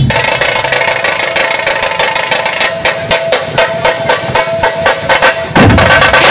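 Dhol-tasha drumming: a rapid, dense rolling of high, sharp tasha strokes while the big dhols mostly hold back, then the large dhols come back in with heavy deep beats near the end.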